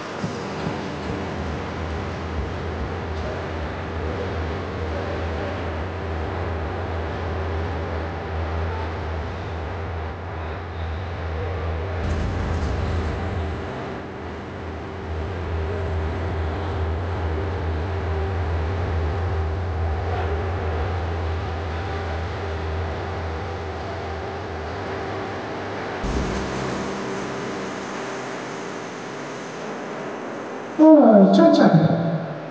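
Boxing-hall ambience between rounds: a steady low bass drone, which shifts abruptly about twelve seconds in and drops away near the end, under a haze of crowd murmur.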